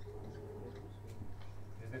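Quiet lecture-room background: a steady low hum with a few faint, light ticks and faint voices in the background.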